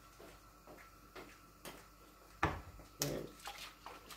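Bottles and a glass jar being handled on a kitchen counter: a few light clicks, then two sharper knocks about two and a half and three seconds in, over faint room hum.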